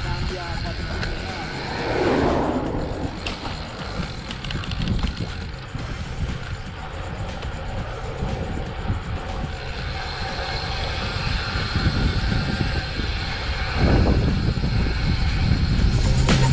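Wind buffeting a bike-mounted camera's microphone while riding a road bike at speed, with a car passing about two seconds in.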